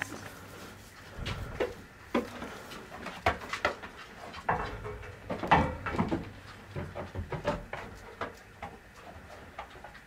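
Faint sounds of a goat moving about in a straw-bedded wooden stall: scattered knocks and rustles, with a few short, faint animal calls about halfway through.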